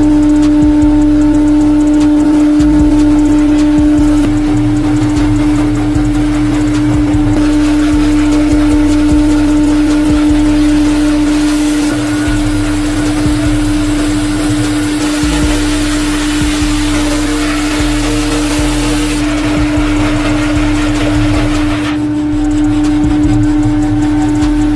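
Bandsaw running with a steady motor hum while its blade resaws a thick glued-up hardwood board; the cutting noise grows louder through the middle stretch.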